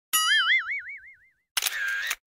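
Cartoon "boing" sound effect: a springy tone that wobbles up and down in pitch and dies away over about a second. About a second and a half in comes a second short effect with a few clicks and a held tone.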